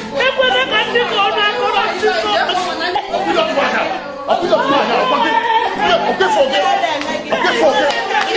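Many overlapping voices over backing music with a repeating low bass figure.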